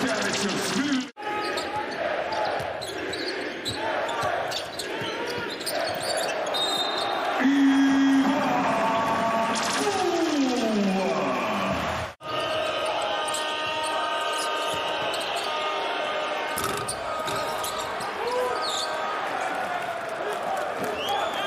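Live basketball game sound: a ball dribbling on the court amid crowd noise and voices. About eight seconds in a loud held tone sounds and then slides down in pitch, and the sound drops out briefly twice where the footage cuts.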